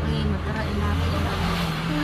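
Low, steady rumble of a motor vehicle engine running close by, with people's voices over it.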